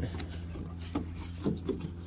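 Plastic shroud of an RV's rooftop air conditioner being rubbed and wiggled by a gloved hand: a few faint scrapes and knocks. The check shows the shroud is not loose.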